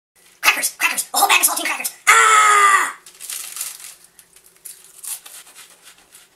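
A man's loud wordless vocal outbursts, ending in a sustained yell of about a second that slides slightly down in pitch. After it come quieter crinkling noises from the plastic sleeve of saltine crackers.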